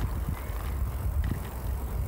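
A bicycle rolling along a tarmac path, making a steady low rumble of tyres and wind noise on the microphone.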